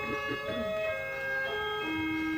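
Orchestral ballet music playing held notes that change every half second or so, with a few short slides in pitch just after the start.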